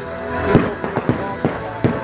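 Fireworks going off in a quick series of sharp cracks and pops, the loudest about half a second in, over music playing along with the light show.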